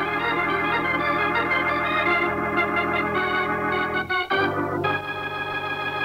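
Organ music bridge of a radio drama: a sustained, pulsing chord that breaks off about four seconds in, followed by a new held chord, marking a scene change.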